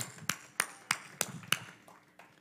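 Hand claps at a steady beat, about three a second, which stop about one and a half seconds in.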